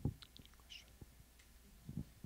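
Handheld microphone being handled: a low thump as it is picked up, another shortly before the end, and faint breathy hisses in between.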